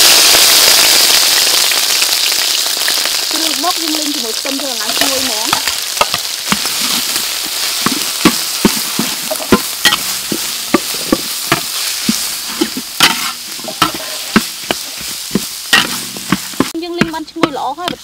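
Onions and chili paste sizzling loudly in hot oil in a wok, the hiss slowly fading. From about six seconds in, a metal spatula scrapes and clicks against the wok again and again as they are stir-fried.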